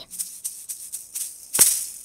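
A baby's toy rattle being shaken: a scatter of quick rattling clicks, with one louder shake about one and a half seconds in.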